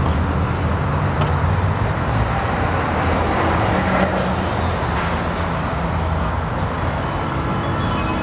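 Street traffic noise, a steady rumble with a noisy hiss over it, with music coming in near the end.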